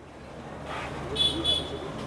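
Background noise rising in the pause, with two short high beeps in quick succession just past the middle.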